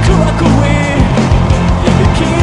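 A rock band playing loudly together: electric guitars, bass, keyboard and drums, with steady drum hits driving the beat.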